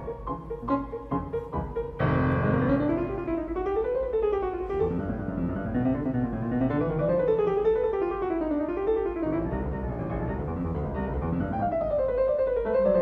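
Solo Fazioli concert grand piano: short separated notes for the first two seconds, then a loud low attack about two seconds in opens an unbroken flowing passage whose melody rises and falls in waves.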